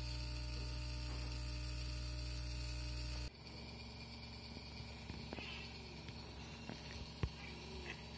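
Small DC motor running steadily at about 6 volts, a constant electric hum with a higher whine, which cuts off abruptly about three seconds in. After that comes quieter room tone with a couple of faint clicks.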